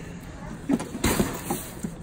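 A heavy cardboard box scraping and knocking against a wire shopping cart as it is hoisted in, with a short noisy scrape about a second in. A woman says "my god" just before it.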